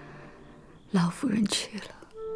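Speech: a woman says one short, hushed line about a second in, after the last of a sustained string-music chord fades.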